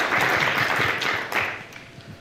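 Audience applauding, the clapping dying away about one and a half seconds in.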